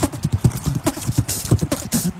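Cartoon sound effect of messy, noisy eating: a fast, even run of wet chomping and smacking mouth sounds, about five or six a second.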